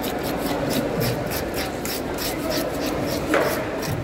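A handheld fish scaler raking scales off a whole fish on a wooden cutting board, in quick rhythmic rasping strokes, several a second. There is one sharper knock of the tool a little over three seconds in.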